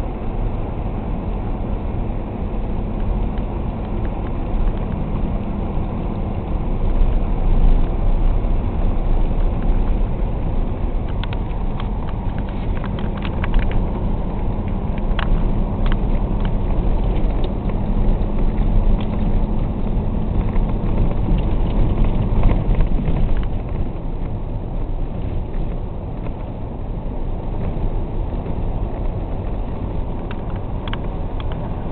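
Diesel engine of heavy construction equipment running steadily. It gets louder a few seconds in and again through the middle, then eases back about three-quarters of the way through. A scatter of light clicks and rattles comes in the middle.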